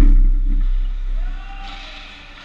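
Heavy low rumble of the rink boards and glass shuddering after players crash into them right at the camera, dying away over about a second and a half.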